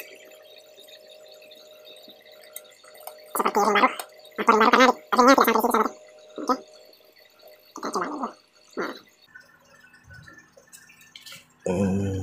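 A man's wordless vocal sounds, wavering in pitch, in about six short bursts from about three seconds in to nine seconds in, over a faint steady hum.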